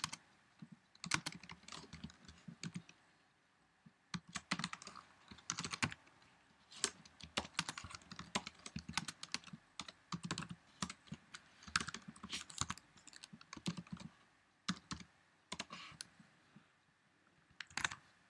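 Keystrokes on a computer keyboard, typed in irregular bursts with short pauses between them.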